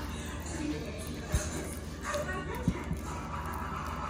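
Soft background music, with two dull knocks about a second and a half in and nearly three seconds in.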